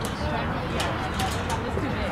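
Background chatter of several people talking at once, with no single clear voice, over a steady low outdoor rumble. A few short, sharp clicks come about halfway through.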